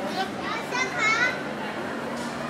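High-pitched children's voices calling out, rising and falling in pitch and loudest about a second in, over a faint steady low hum.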